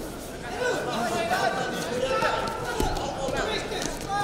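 Several people's voices calling out in a large arena during a wrestling bout, with one short thump a little before the end.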